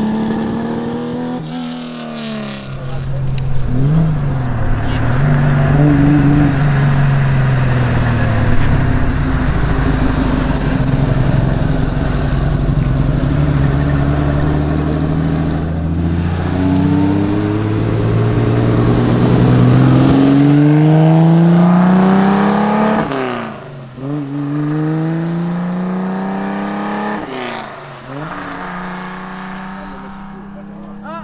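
Classic Porsche 911 2.0 S rally car's air-cooled flat-six driven hard: the engine note climbs steeply under acceleration and drops sharply at each gear change. It gets quieter near the end as the car is farther off.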